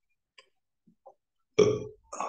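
Near silence with a few faint clicks. Then, near the end, a man's short, loud throaty vocal sound, like a low burp.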